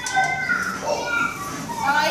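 Children's voices from a classroom video, played back over the room's loudspeakers.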